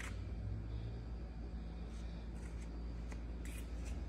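Steady low background hum with faint rustling and a few light clicks.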